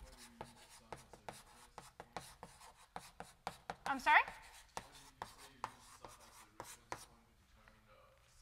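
Chalk writing on a blackboard: a quick run of short taps and scratches that stops about seven seconds in.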